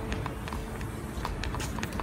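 Quick, irregular footsteps on a paved street, heard over a low rumble on the phone's microphone.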